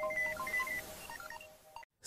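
Electronic news-intro jingle: quick beeping notes over a held low tone, fading out and stopping shortly before the end.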